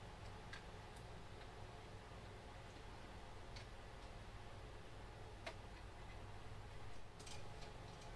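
A few faint, scattered clicks and taps from a PTFE Bowden tube being handled and pushed into a 3D printer's fittings, with a small cluster near the end, over a faint steady hum.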